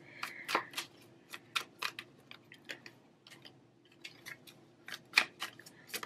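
An astrology card deck being shuffled by hand: soft, irregular clicks and slaps of cards against each other, thinning out for about a second midway before picking up again.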